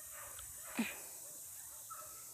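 A single short animal yip that falls sharply in pitch, about a second in, against a faint background.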